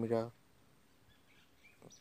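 A man's voice says a single word at the start, then quiet background with a few faint, short high chirps.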